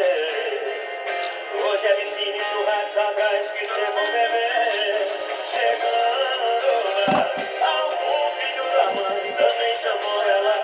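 Music with a sung vocal, thin-sounding with no bass, with a couple of soft knocks about seven and nine seconds in.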